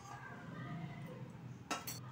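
A quiet stretch with one short, sharp metallic clink of a stainless steel plate near the end, over faint distant voices.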